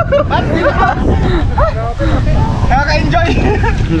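Several men's voices calling out and exclaiming over one another, with a steady low rumble underneath.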